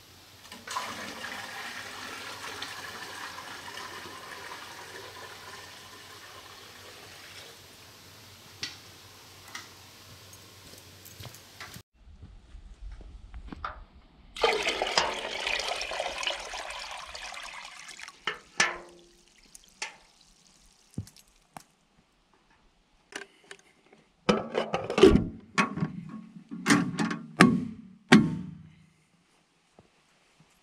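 Water poured from a metal bucket into a steel ammo can: a steady splash of filling lasting about ten seconds, then a shorter, louder pour a few seconds later. Near the end comes a run of loud metal clanks and knocks as the ammo can's lid is shut.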